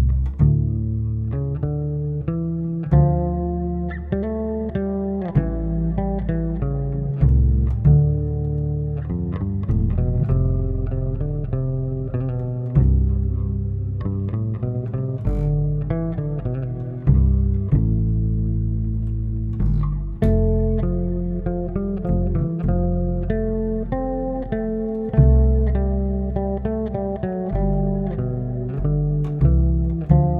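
Bass duet of a plucked upright bass and a Fender Jazz electric bass playing a traditional Swedish bridal march, a steady stream of plucked notes with a low bass line beneath a higher melody.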